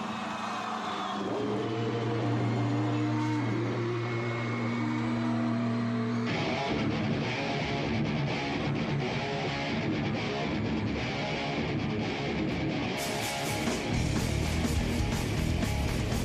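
Rock band playing live with electric guitars: held guitar and bass notes at first, then the full band comes in about six seconds in, and the drums hit harder near the end.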